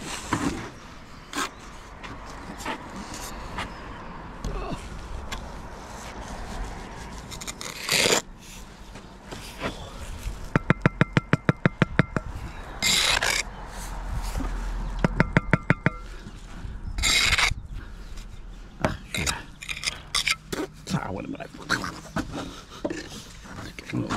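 Steel brick trowel scraping and working wet mortar on brickwork in separate strokes, a few of them louder. Two short runs of fast, even clicking come in the middle.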